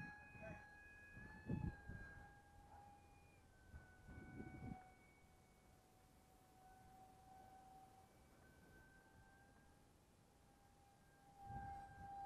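Faint, steady whine of an electric-powered RC model jet's motor heard in flight, its pitch drifting slightly lower and then back up. A few short low rumbles of wind on the microphone break in.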